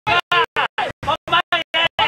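Background music with a sung vocal chopped into rapid, even on-off pulses, about five a second.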